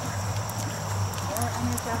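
Horse trotting on sand arena footing, its hoofbeats as scattered light clicks over a steady low hum, with a brief distant voice about one and a half seconds in.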